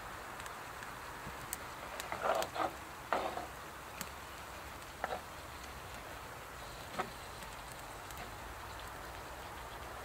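Food sizzling faintly and steadily in a cast iron pan on a wood-burning stove, with occasional sharp crackles. A few louder knocks come about two to three seconds in, as the stove door is opened for more flame and heat.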